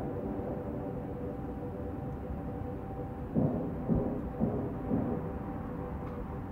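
Muffled soundtrack of an old 1950s TV movie playing in another room: a steady low rumble under faint held music tones, with a few louder muffled thumps a little past the middle.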